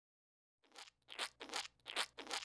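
A run of short, faint crunching sounds, about three a second, starting about a second in.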